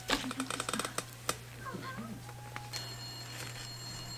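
A rapid run of light clicks in the first second, then a single click, followed by faint voices and a faint steady high tone.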